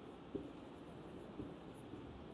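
Marker pen writing on a whiteboard: faint strokes with a couple of small taps of the pen tip.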